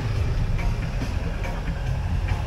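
Shuttle bus driving along, a steady low rumble of engine and road noise heard from a seat in its open-sided cabin.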